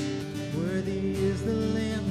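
Live worship music led on acoustic guitar, with a steady low bass note coming in about half a second in.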